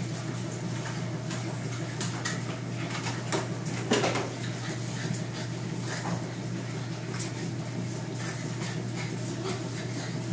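English bulldog mother and puppies playing: scuffling with scattered claw taps on the concrete floor, and a short puppy yelp about four seconds in.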